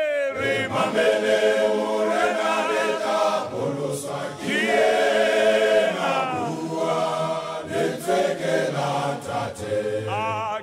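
Male choir singing a cappella in a chant-like style, a single lead voice with wavering, upward-gliding calls alternating with the full choir.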